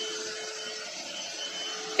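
Steady background hiss with a faint hum that fades out about halfway through.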